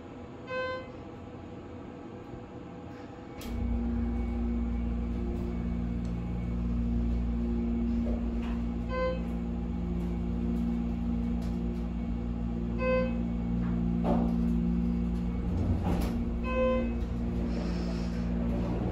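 Schindler 330A hydraulic elevator going up: a single chime, then a few seconds in the pump motor starts with a steady low hum as the car climbs. The chime sounds three more times as the car passes floors.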